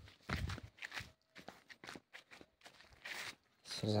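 Irregular footsteps on a dirt footpath through vegetation, soft scuffing steps, with a voice starting near the end.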